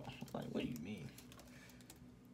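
Keystrokes on a computer keyboard, a run of quick clicks, mixed with a brief mumbled voice in the first second.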